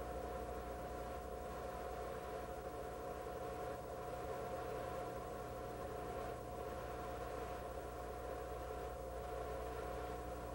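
Steady hum and hiss inside the cabin of a car idling while stopped, with a constant mid-pitched drone and no sudden sounds.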